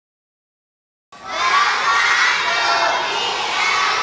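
After about a second of silence, a large crowd of young children starts shouting and cheering together, calling out a welcome in unison.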